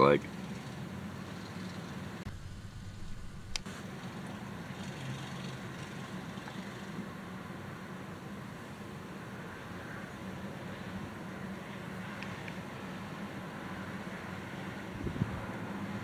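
Steady low hum of road traffic, cars passing at low speed, with a single click about three and a half seconds in.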